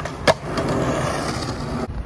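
Skateboard landing on concrete with a single sharp clack about a third of a second in, then its wheels rolling over the concrete. The rolling cuts off suddenly near the end.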